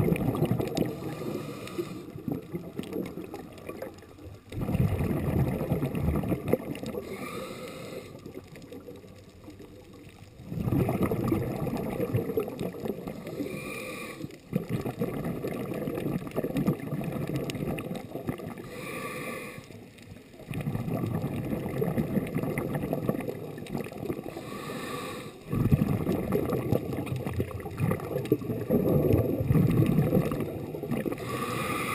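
Scuba diver breathing through a regulator, heard underwater: a short hiss on each inhale, then a long rush of exhaled bubbles, repeating about every five to six seconds.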